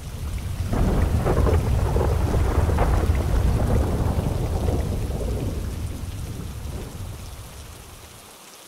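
Rolling thunder over steady rain: a deep rumble builds about a second in, stays loud for a few seconds, then fades away near the end.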